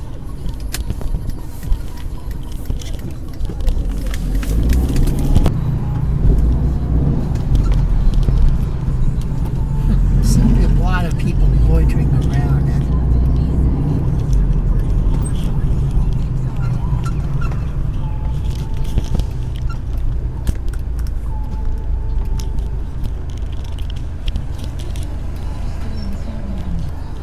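Car cabin noise while driving: a steady low rumble of engine and tyres that grows louder a few seconds in.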